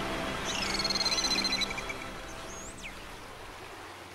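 Dolphin calls: a rapid pulsed buzz with a whistle-like tone lasting about a second, then a short high whistle that rises and falls, over a soft hiss. Orchestral music fades out at the start.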